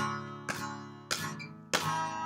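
Acoustic guitar strummed to a steady beat, three strums about 0.6 s apart, each chord ringing and fading. A small dog sneezes right at the start.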